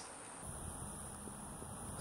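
Faint low rumble and hiss of background noise, starting about half a second in.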